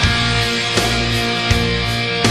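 Melodic heavy metal band playing an instrumental passage: distorted electric guitar and keyboards hold chords over bass, with a drum hit about every three-quarters of a second.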